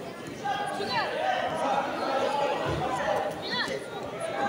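Many indistinct voices chattering in a large sports hall. Two short falling squeaks sound through it, about a second in and again near the end.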